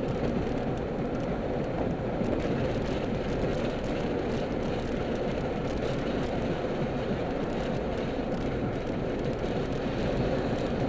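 Steady road and engine noise of a car cruising, heard inside its cabin.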